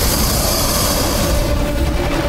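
Water splashing and churning as a man thrashes in deep water, a steady rushing noise whose hiss eases about a second and a half in. A faint sustained musical tone runs underneath.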